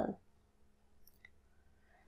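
A single faint click about a second in, during an otherwise quiet pause between spoken sentences.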